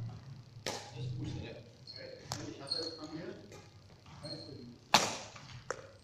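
Badminton rackets hitting a shuttlecock in a rally, sharp cracks every second or so, the loudest about five seconds in. Between hits, short high squeaks of shoes on the court floor.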